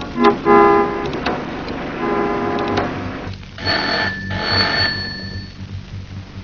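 A landline telephone's bell ringing in two bursts past the middle, after a few clicks and short tones in the first seconds.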